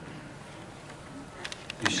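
Handheld microphone passed between panellists: faint steady room noise, then a few sharp handling clicks near the end as it is taken up, just before a man starts speaking.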